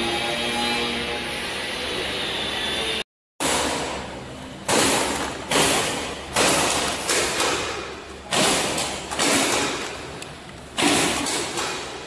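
A vertical form-fill-seal packing machine runs with a steady hum for the first three seconds. Then, after a sudden cut, filled 1 kg powder bags are set down one after another on a bench scale for check-weighing: about six heavy thuds, each with a crinkle of plastic film that fades away.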